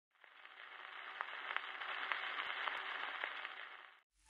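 Faint surface hiss and crackle of a 1928 Grammophon 78 rpm shellac record running in its lead-in groove, with a sharp click about every half second. It fades in over the first half second and cuts off near the end.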